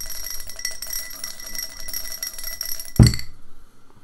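A die rattling fast inside a shot glass shaken by hand, the glass ringing steadily with each knock. About three seconds in, the glass is slammed mouth-down onto the table with a loud thud, and the rattling stops.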